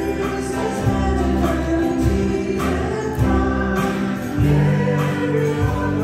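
A church worship team singing a hymn together into microphones, backed by a live band with a moving bass line.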